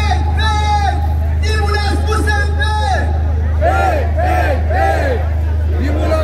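Protest slogan chanting: a loud leading voice calls long held phrases, then short rhythmic syllables about twice a second from a little after halfway. Crowd babble and a steady low hum run underneath.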